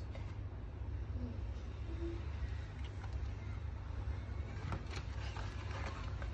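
Steady low background rumble, with a few faint taps near the end as a hardcover picture book is closed and pressed shut by hand.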